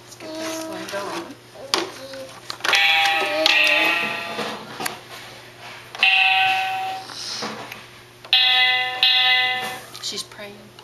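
Children's electronic toy keyboard sounding notes as its keys are pressed: a few sustained electronic tones, each about a second long, around three seconds in, around six seconds in, and twice near the end.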